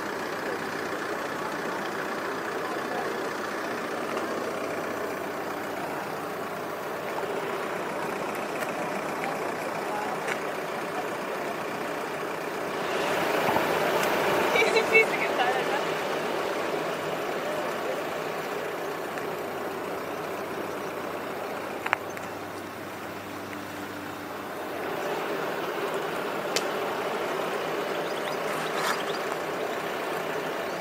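A car engine idling close by under indistinct background voices, getting louder for a few seconds about halfway through, with a single sharp click later on.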